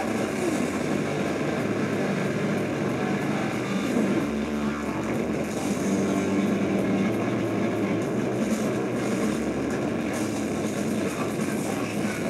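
A rock band playing live with electric guitars, bass and drums, loud and steady, recorded from within the crowd.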